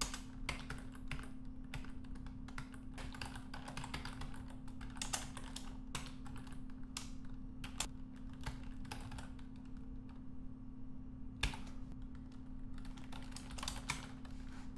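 Typing on a computer keyboard: irregular keystroke clicks, with a brief pause about ten seconds in, then one louder keystroke and another run of typing.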